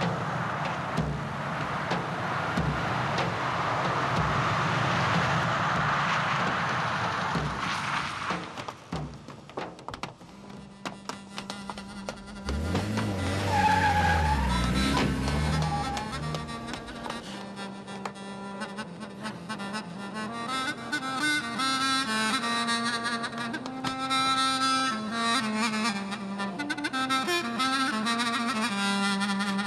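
A motor vehicle's engine and tyre noise for the first several seconds, with a low engine sound rising and falling around the middle. Then a dramatic music score with strings and brass takes over.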